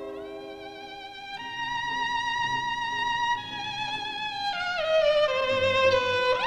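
Solo violin playing slow, long held notes with vibrato, stepping down in pitch, then sliding quickly up into a new note near the end.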